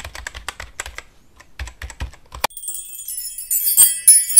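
Keyboard typing sound effect: a quick run of key clicks for the first two and a half seconds. It is followed by a bright, tinkling sparkle chime that grows louder toward the end, with a few more clicks.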